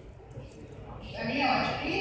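A woman's voice lecturing, starting about halfway through after a quieter moment.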